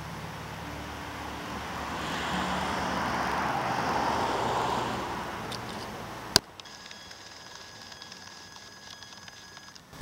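A rushing noise that swells over about three seconds and then fades, like a vehicle passing by. About six seconds in comes a single sharp click, after which it is much quieter, with faint steady high-pitched tones.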